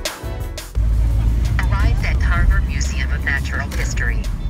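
Background music stops, then a steady low road rumble of a moving car, heard from inside, comes in suddenly about a second in. Indistinct voices talk over it in the second half.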